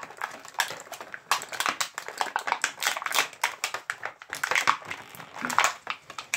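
Stiff clear plastic toy packaging crinkling and clicking as small figures are pried out of a blister tray: a quick, irregular run of sharp crackles.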